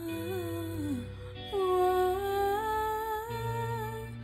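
A male voice singing wordless melodic phrases into a handheld microphone over a backing track of sustained chords: a short falling phrase ending about a second in, then one long held note, stepping slightly upward, to the end.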